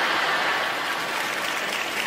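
Theatre audience applauding steadily, with laughter mixed in.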